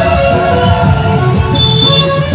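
Music: an Adivasi (Bhil) folk-style song with a steady beat and long held melody notes.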